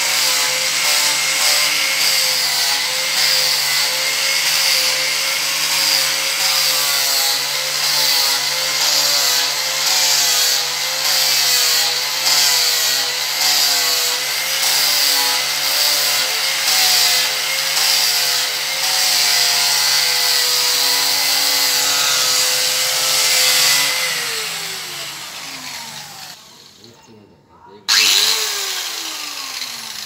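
Corded angle grinder with an abrasive disc running against a wooden door frame, its motor pitch wavering as the disc is pressed into the wood. Near the end it is switched off and winds down, is switched on again briefly and winds down once more.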